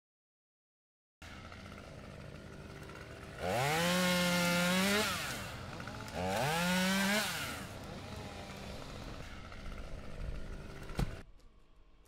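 Two-stroke chainsaw idling, then revved up to full throttle twice for a second or so each time, with a single sharp crack near the end.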